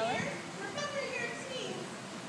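Voices only: the close speaker finishing a phrase, then quieter background chatter of several people, children among them.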